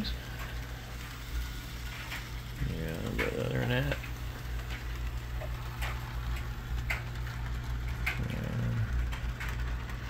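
N scale model train running on layout track, a small diesel-type locomotive pulling boxcars. It gives a steady low hum with scattered light clicks. Short low voice murmurs come about three seconds in and again about eight seconds in.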